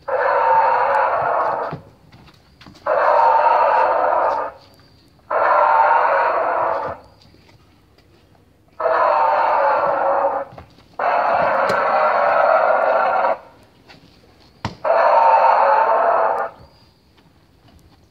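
Recorded dinosaur roars played through the walking T-rex costume's small built-in speaker: six roars of about two seconds each, about a second apart, sounding thin and without bass.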